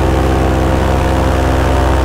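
Paramotor's two-stroke engine running at a steady throttle in flight, a constant pitched drone close to the microphone.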